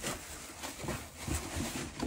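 Clear plastic bag crinkling and rustling as it is handled.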